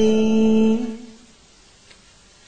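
A voice chanting Vietnamese verse holds the last syllable of a line ('ly') on one steady note. The note ends about a second in.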